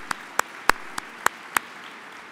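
One person clapping close to the microphone, about three sharp claps a second, over a softer wash of audience applause; the close claps stop shortly before the end.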